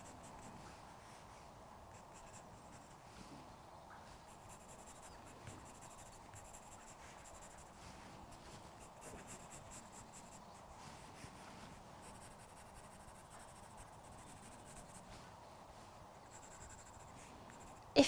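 Pencil strokes on drawing paper, faint and continuous, as a graphite pencil shades a drawing.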